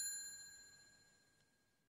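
A bell "ding" sound effect for tapping the notification bell: a single bright ring with several high tones, fading away within about a second.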